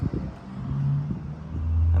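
A motor vehicle's engine running nearby: a low steady hum that grows louder about one and a half seconds in.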